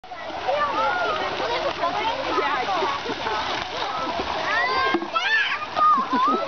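Busy swimming pool: many children's voices shouting and chattering over one another above a steady wash of water splashing.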